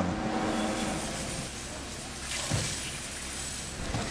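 Steady outdoor noise of a fire scene: a low, even engine rumble from a fire engine running, under a broad hiss that swells briefly about two seconds in.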